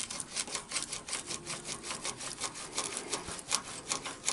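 A rapid, even rasping or ticking rhythm of about six short strokes a second, steady in pace and level.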